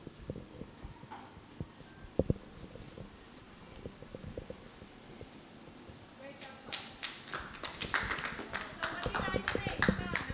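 Quiet room with a few scattered knocks, then from about two-thirds of the way in a small group clapping, with voices mixed in.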